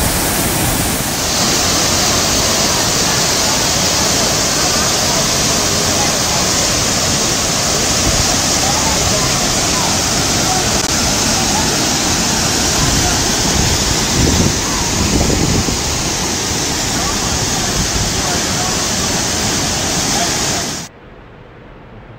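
Waterfall pouring onto rock close to the microphone: a loud, steady rush of falling water that turns hissier about a second in and cuts off suddenly near the end.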